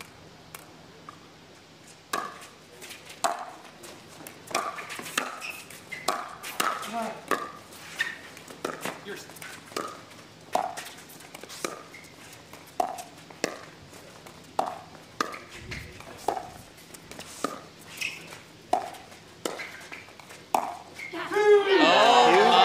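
Pickleball paddles striking a plastic ball in a long rally of dinks: a sharp pop with a brief ring every second or so, over twenty hits. Voices burst out in shouts and cheers as the point ends.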